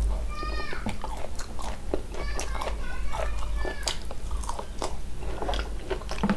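Close-up eating sounds of mutton curry on the bone being chewed and sucked, with many wet lip smacks and clicks. There is a brief high squeaky sound about half a second in.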